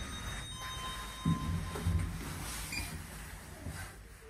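Electronic chime of an OTIS Genesis elevator, a steady tone of several pitches for about a second at the start, then low thuds and a brief hum.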